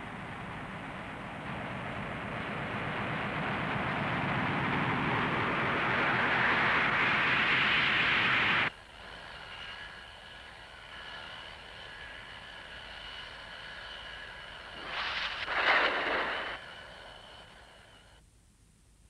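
Cartoon sound effects: a rushing roar that swells for about eight seconds and then cuts off suddenly, followed by a quieter passage of steady high tones with a brief surge near the end before it fades.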